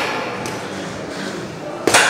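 Cable machine weight stack giving one sharp metallic clank near the end as the ankle-strap cable is worked, over steady gym room noise.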